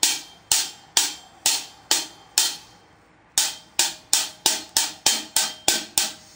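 Single drumstick strokes on a drum in a backsticking pattern, the stick flipped in the hand to strike with its butt end. Sharp, ringing hits about two a second, a pause near the middle, then faster hits about three a second.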